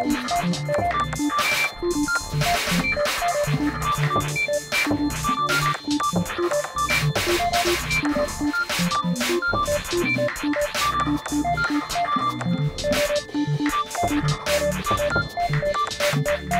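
Electronic music: short, beep-like synthesizer notes jumping between pitches over a low, repeating bass pattern, with noisy percussive hits.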